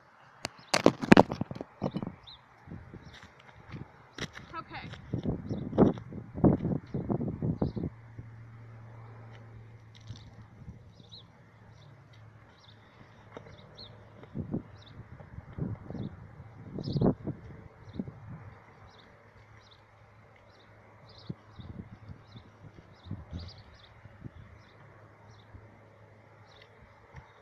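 Knocks and handling noises of a plastic jug being set up on asphalt, loudest near the start, from about five to eight seconds in, and again around seventeen seconds. A faint high chirp repeats about once a second throughout.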